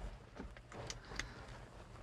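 A few faint clicks of a small plastic plug and its cable being handled, over a low steady hum.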